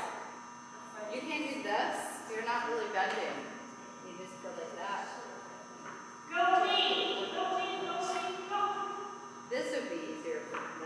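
Indistinct voices talking, with a louder drawn-out stretch about six seconds in, over a steady electrical hum.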